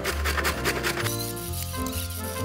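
Background music with sustained tones, and in the first second a quick run of rasping strokes as peeled cassava root is rubbed against a stainless steel box grater.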